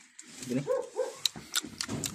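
A dog giving a couple of short yelps, followed by a few sharp clicks.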